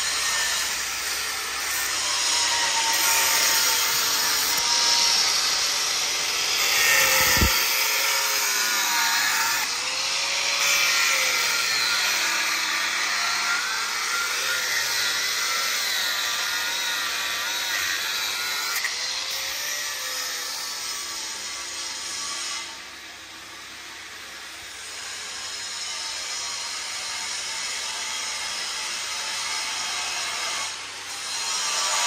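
Angle grinder grinding the steel armour hull of a tank, its pitch wavering as the disc bites under load. It drops quieter about three-quarters of the way through.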